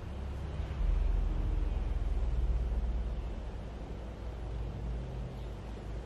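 A low rumble with no clear pitch that swells about a second in and eases off after about three seconds.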